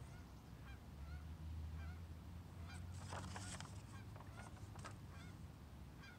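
Geese honking: faint, repeated short calls over a steady low rumble.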